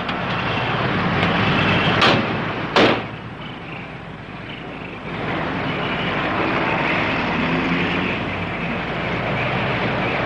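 A 1950s police sedan's engine running as the car pulls up, then two car doors slamming a little under a second apart, about two seconds in. A steady noisy background follows.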